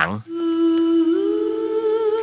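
A hummed voice holding one steady note, then sliding up about a second in to a higher note and holding it.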